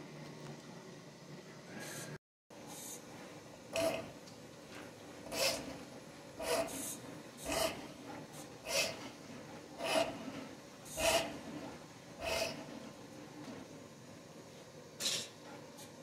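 Drum-type drain-cleaning machine feeding its cable into a clogged drain line: a faint steady running sound with a short scraping rasp of the cable roughly every second or so.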